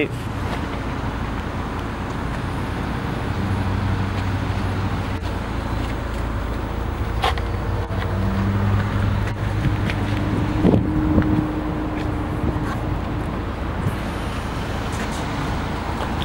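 Power liftgate of a 2017 Buick Envision moving under its electric motor: a steady low motor hum for about six seconds, followed by a shorter, higher hum, over constant outdoor wind and lot noise.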